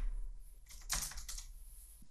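Computer keyboard typing: a few light keystrokes, with a quick run of several key presses about a second in.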